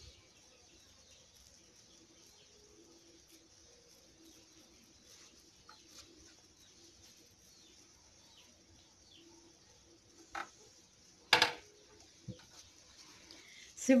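Quiet background with faint, scattered bird chirps, and two short, sharp louder sounds near the end, the second the loudest.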